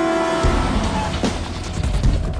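A car driving up and drawing close, its engine and tyres rumbling with street noise, coming in about half a second in as a held brass note of the film score fades out.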